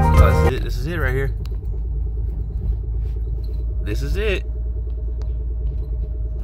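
Steady low rumble inside a car's cabin as it drives slowly. Music cuts off about half a second in, and a short wavering voice-like sound comes twice, about a second in and about four seconds in.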